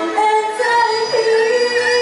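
A woman singing live into a handheld microphone, settling into one long held note about half a second in.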